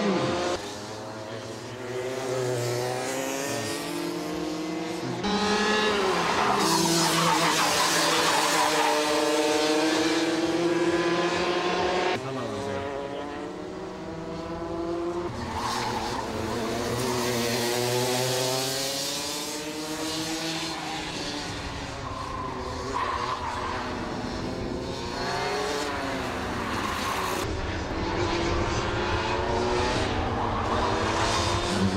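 Several racing karts' two-stroke engines revving hard on a circuit, their high-pitched notes rising and falling as the karts accelerate and brake through the corners. The sound changes abruptly several times.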